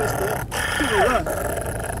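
Steady road noise inside a moving car's cabin, with a few short, sliding, playful voice sounds about halfway through.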